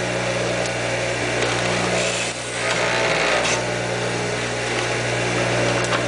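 Small electric lathe for shaping tagua nut (vegetable ivory) slices, running with a steady motor hum under a dense grinding hiss. The hiss swells for a second or so about two seconds in.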